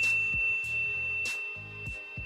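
Background music with a steady beat, with the high ringing tone of a single 'correct answer' ding sound effect fading out across it.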